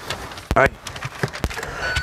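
Scattered light clicks and knocks of people settling into a car's front seats, with a short "ay" exclamation about half a second in.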